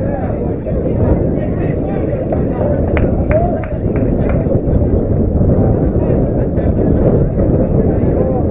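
Indistinct voices of people at a ballfield, no clear words, over a steady low rumble that is the loudest part of the sound.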